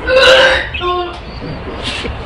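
A woman gagging: a loud retching heave, then a short, steady groan about a second in.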